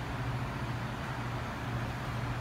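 Steady low mechanical hum over a constant background hiss, with no distinct events.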